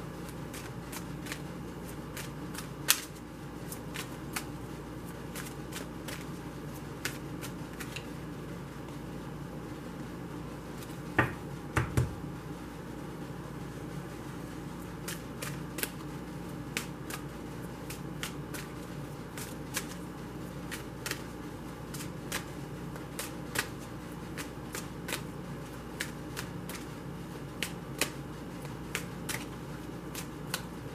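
Tarot cards being shuffled overhand by hand: a steady run of light card clicks and flicks, with a few louder knocks about eleven seconds in, over a steady low hum.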